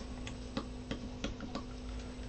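Soft, regular ticking, about three light ticks a second, over a faint steady hum.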